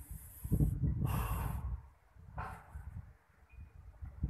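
Wind buffeting the phone's microphone: an uneven low rumble, with a few short gusty hisses in the first second and a half and one more about halfway through.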